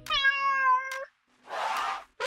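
A meow: one call of about a second, rising slightly in pitch and cutting off abruptly. After a short pause comes a brief breathy, hiss-like sound.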